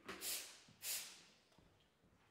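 Two short bursts of breathy air noise about half a second apart, like sharp breaths or sniffs.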